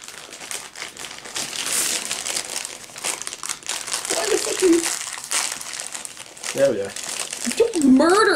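Crinkling of a liquorice allsorts sweet packet as it is opened and rummaged through by hand, a dense crackle running on with small pauses.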